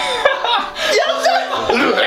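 Several people chuckling and laughing, with bits of voice mixed in.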